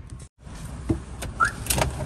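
A car's low, steady engine and road rumble, with several sharp clicks and a short rising squeak from inside the cabin. The sound drops out briefly just after the start.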